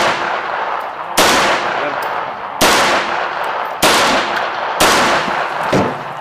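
Four single pistol shots fired at a steady pace, about a second to a second and a half apart, each dying away in a long echo over the range.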